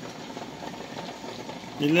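Water boiling steadily in a stainless stockpot with cans submerged in it, an even bubbling hiss. A woman starts talking near the end.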